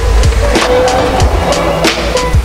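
Skateboard sounds, wheels rolling and the board hitting the ground with sharp clacks, over a loud music track with a heavy bass beat.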